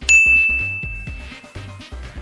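A single bright ding sound effect that strikes suddenly and rings out, fading over about a second and a half. It sits over background music with a steady bass beat.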